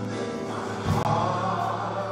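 Live gospel singing by a small group of worship singers with band accompaniment, over a steady low bass note. A sharp percussion hit sounds just before a second in.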